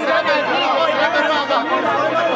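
Many voices talking over one another at once: the chatter of a crowd of mourners, with no single voice standing out.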